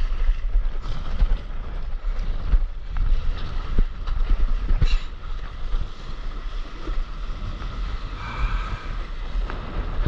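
Wind buffeting the microphone in a low rough rumble, over water splashing and slapping against the nose of a stand-up paddleboard moving through choppy sea.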